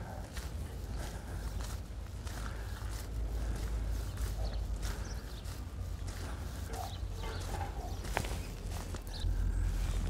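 Footsteps of a person walking on a gravel and grass path, a steady run of short scuffs, over a steady low rumble that grows stronger near the end.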